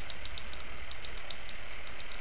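Homemade capacitor pulse motor running steadily on about 1.5 volts: a low steady hum with a light ticking several times a second.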